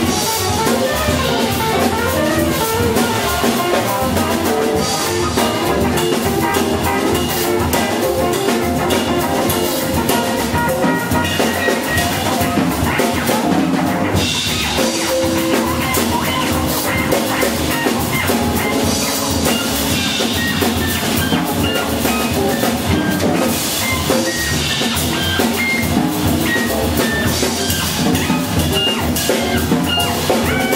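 Small jazz combo playing live: upright double bass, electric guitar and drum kit.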